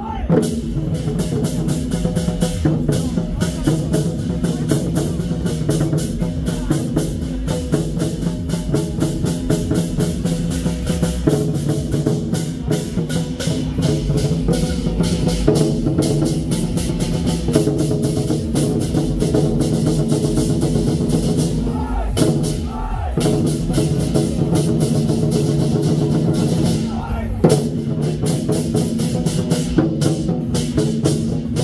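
A Taiwanese war-drum (zhangu) troupe beating large barrel drums in a fast, dense rhythm over a steady pitched music part. The drumming breaks off briefly twice in the last third.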